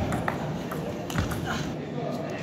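Table tennis ball being struck back and forth in a rally: a series of short, sharp clicks of the ball off the paddles and the table.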